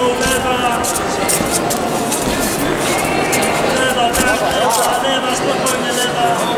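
Many voices talking and calling out over one another around a boxing ring, with music playing in the background.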